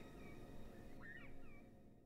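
Faint bird calls: two short phrases of chirping notes about a second apart, over low background noise that fades out near the end.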